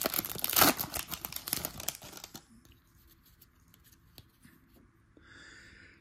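Foil wrapper of a baseball card pack being torn open and crinkled, in a dense crackling for about the first two seconds, then dying away to faint handling of the cards.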